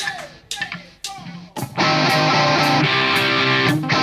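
A hard rock band kicks in with distorted electric guitars, bass and drums at full volume about two seconds in. Before that there are a few short vocal calls over a quieter stage.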